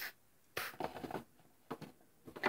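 Faint scuffs and light taps of small plastic toy figurines being handled and set down on a tabletop, in a few short irregular bursts.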